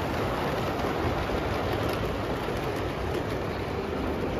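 LGB G-scale model trains running along the layout's track: a steady rolling rumble.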